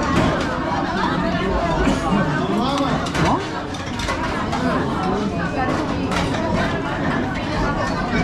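Many voices talking over one another in a busy, crowded restaurant dining room.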